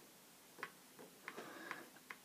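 A handful of faint clicks from working a laptop's pointer to pick an entry in a web form: one clearer click about half a second in, then several closer together in the second half.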